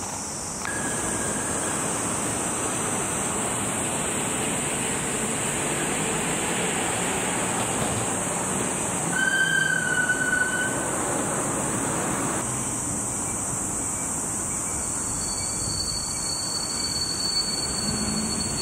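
Steady outdoor background noise: a dense rushing sound under a constant shrill high band. Two short level whistled bird calls cut through it, a faint one about a second in and a louder one about nine seconds in. The rushing thins out at about twelve seconds.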